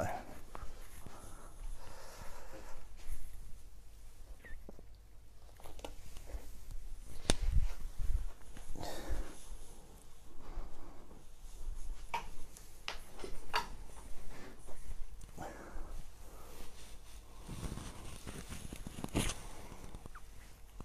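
Shuffling, rustling and scattered knocks and clicks as a man gets up from his chair and reaches under a table to pick up a pet ferret. The loudest thump comes about a third of the way in.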